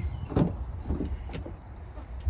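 Rear door of a Mitsubishi L200 pickup being opened: a sharp latch click about half a second in and a second click about a second later, over a low rumble.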